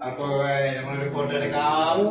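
A man's voice chanting drawn-out 'na na' syllables to a slow melody, each note held and gliding gently.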